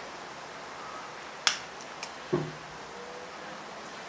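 A sharp metallic click about one and a half seconds in, then a fainter one half a second later: stainless big game pliers squeezing a Mustad 4202 open-eye gang hook's eye closed around a crane swivel. Heard over a steady low hiss.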